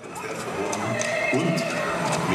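Circus show soundtrack with music and a horse's whinny and hoof clip-clop played as sound effects over loudspeakers for projected horses. It fades in at the start.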